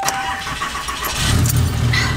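A Ram pickup truck's engine being started from inside the cab: a steady electronic chime tone stops about half a second in, the engine cranks briefly and catches about a second later, settling into a low, evenly pulsing idle.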